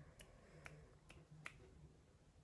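Near silence with a few faint, sharp clicks, about four spread over two seconds.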